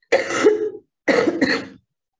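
A woman coughing twice, two short harsh coughs about a second apart.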